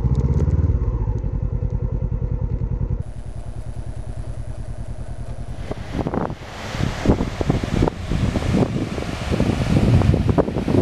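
Honda CB500X's 471 cc parallel-twin engine idling through a Staintune exhaust with an even pulse, dropping quieter at about three seconds. From about six seconds wind gusts buffet the microphone over the sound of surf.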